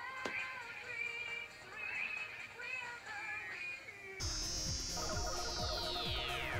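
Cartoon transformation music: an upbeat pop song with a processed female singing voice. About four seconds in it cuts abruptly to a battle sound effect: a steady rumble with a high tone that sweeps steeply downward near the end.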